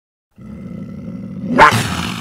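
Logo-intro sound effect: a low, growling rumble starts about half a second in and builds to a loud hit about one and a half seconds in, then fades.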